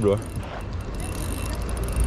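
A steady low rumble of outdoor background noise, after the last word of speech at the very start.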